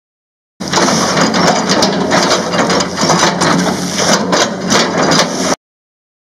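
Excavator grapple crushing and breaking a felled oil palm trunk: a dense run of cracks and crunches of splitting wood over the machine's steady running noise. It starts abruptly under a second in and cuts off sharply near the end.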